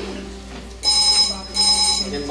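A telephone ringing in a double ring: two short rings close together, starting a little under a second in.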